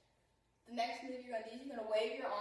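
A woman's voice, starting after a brief near-silent pause in the first half second and continuing to the end.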